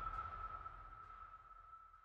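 The tail of a logo sting fading out: one steady high tone over a low rumble, dying away to near silence by the end.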